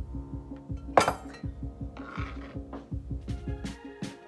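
Background music with a steady beat, over which a metal table knife clinks sharply once against a small ceramic bowl about a second in, then scrapes along it as raisins are pushed out, with a few lighter clicks near the end.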